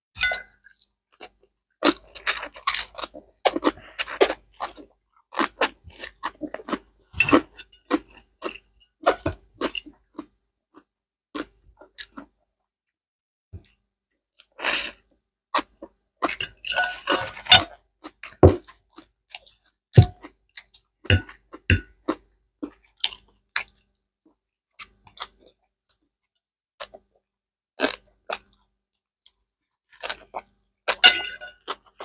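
Close-miked eating sounds: chewing and crunching of food in irregular clusters of wet clicks, separated by short silences, with a denser stretch about 17 seconds in.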